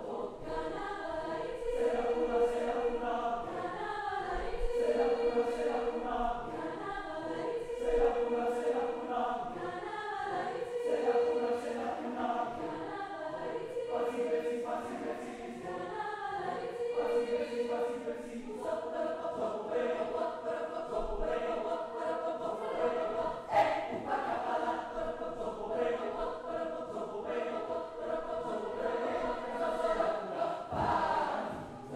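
Mixed choir of men's and women's voices singing, with a held note returning every couple of seconds at first, then one long sustained chord through the last third.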